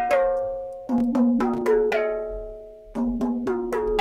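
A melodic music sample plays through FL Studio's Fruity Stereo Shaper: pitched notes start at the top, about a second in and again near three seconds, each ringing out and fading, with light percussive ticks between them. The plugin's delay knob is being turned, setting a short left-right delay, the Haas effect, to widen the sample's stereo image.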